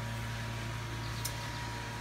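Steady low machine hum in a room, with a faint thin high whine over it and one small click just after a second in.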